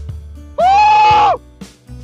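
A man's loud, held shout of just under a second, on one high steady note, starting about half a second in, over background music with a steady beat.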